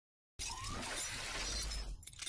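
Logo-reveal intro sound effect: a sudden dense crash-like burst about half a second in, with a deep rumble beneath and a faint rising tone, cut off abruptly near the end.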